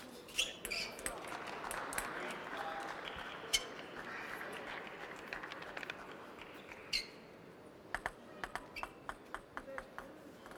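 Celluloid-type plastic table tennis ball being hit with rubber bats and bouncing on the table, sharp clicks at the close of a rally. Then a few seconds of crowd reaction and voices in the hall, with a couple of single ball bounces. Near the end comes a quick run of ball clicks as the next point is served and played.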